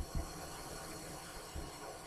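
Faint steady hiss of room and microphone noise, with two soft low thumps right at the start.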